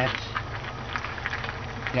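Hands working a PCV valve into its rubber grommet on a Toyota valve cover: faint scattered rubbing and clicking, over a steady low hum.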